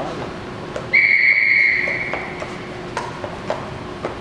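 Start signal for a show-jumping round: a single steady high tone sounds about a second in, holds for about a second and fades away, telling the rider to begin the course.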